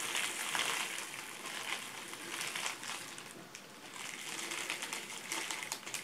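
Soy wax pellets poured from a plastic bag into two silicone cupcake cases, a rustle of many small ticks mixed with the crinkling of the plastic bag.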